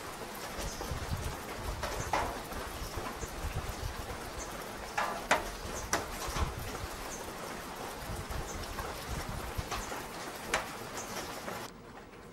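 Forest ambience: a steady background hiss with some low rumble, broken by scattered sharp taps and clicks at no regular beat. The loudest cluster falls about five to six and a half seconds in, and a single loud one comes near the end. It turns quieter just before the end.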